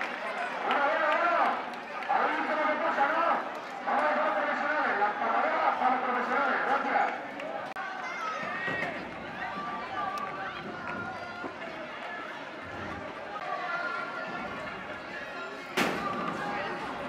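Crowd of spectators calling out and chattering, loudest in the first half and then dropping to a lower murmur of voices. Just before the end there is a single sharp knock.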